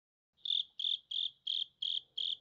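Cricket chirping: short, evenly spaced chirps, about three a second, starting about half a second in.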